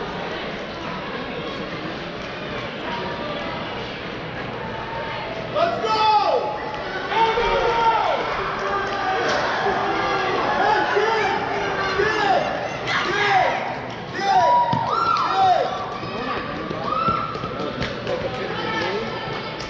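Crowd voices echoing in a large indoor track arena. From about six seconds in, a string of loud, short yells falls in pitch over the steady murmur, then eases off near the end.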